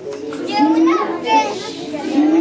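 A group of preschool children singing together, their voices loud and close.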